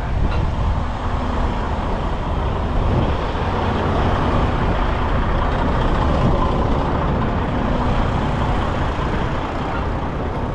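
Semi-truck diesel engine idling with a steady low rumble.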